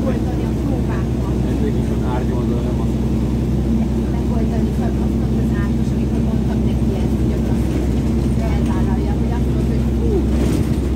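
City bus running, heard from inside the passenger cabin: a steady low drone made of several even hum tones, with passengers' voices faintly over it.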